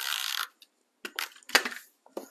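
A hand-held adhesive tape runner drawn across a strip of cardstock, a short zip of about half a second, followed about a second in by a few light clicks and rustles of paper being handled.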